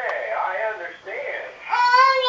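A 15-month-old toddler's voice: babble-like sounds, then, near the end, a loud, high-pitched, drawn-out cry-like call that rises and falls.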